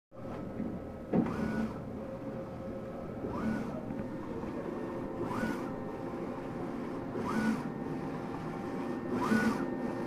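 Mimaki UJF-6042 UV flatbed printer printing: the print-head carriage sweeps back and forth, with a short rising whine and a hiss at each pass, about every two seconds, over a steady machine hum. A sharp click about a second in.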